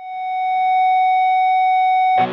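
A single steady electronic tone at the opening of a rock song, swelling in over about the first second and then held at one pitch.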